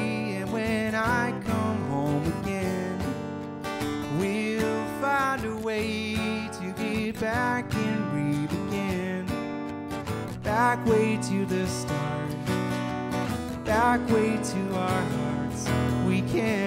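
Acoustic guitar strummed, with a singing voice over it holding long wavering notes.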